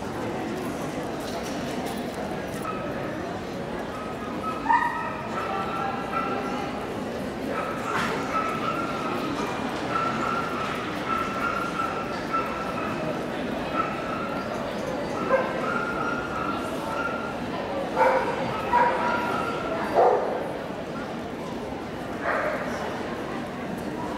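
A dog whining in long, high-pitched whines again and again, broken by a few sharp yelps about five seconds in and again near eighteen to twenty seconds in, over a steady murmur of crowd chatter.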